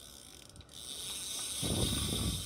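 Ryobi size-5500 spinning reel being cranked by hand, giving a soft whirr with fine rapid clicking that grows louder in the second half. The reel turns smoothly and lightly.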